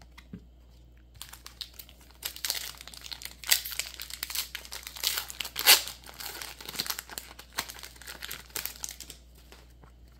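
Foil wrapper of a Pokémon card booster pack being torn open and crinkled by hand: a run of sharp crackling that starts about a second in and stops shortly before the end, with the loudest rips in the middle.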